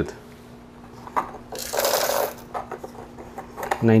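Breville Barista Express's built-in burr grinder running in a short burst of under a second, just after a click, over a faint steady hum.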